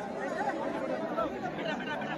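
A crowd of many people talking at once, an overlapping babble of voices with no single voice standing out.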